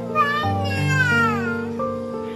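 A cat's meow: a short call near the start, then one longer call falling in pitch through the middle, over background music with held notes.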